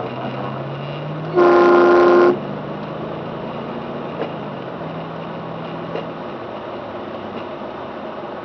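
A car horn sounds once, loud and steady, for just under a second, over the continuous hum of the car's engine heard from inside the cabin, its pitch rising and stepping as the car gathers speed.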